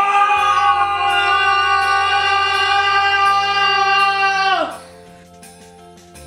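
A single long sung note, held with a slight waver over background music, then sliding down and breaking off about three-quarters of the way through; quieter background music carries on after it.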